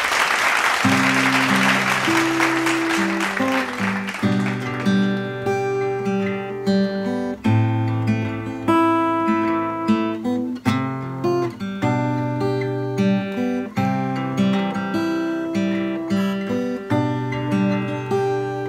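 Steel-string acoustic guitar playing solo. It opens with a dense wash of fast strumming for about four seconds, then settles into a steady chord pattern of clear ringing notes with regular strokes.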